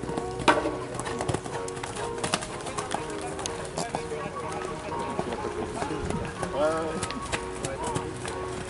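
A horse's hoofbeats as it canters around a sand show-jumping arena, over steady background music and voices, with one voice briefly louder about two-thirds of the way through.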